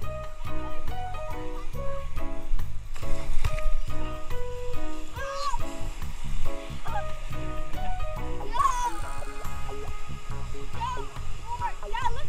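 Background music with a steady beat and melody, with water splashing faintly beneath.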